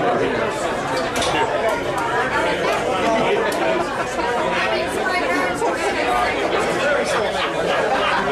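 Crowd chatter: many people talking over one another at once in a packed room, a steady babble with no single voice standing out.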